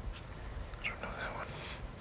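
A soft, breathy whisper near the middle, over a low background rumble.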